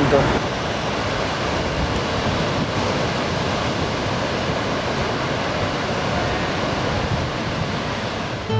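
Steady rushing of water, an even noise at a constant level with no rhythm or breaks.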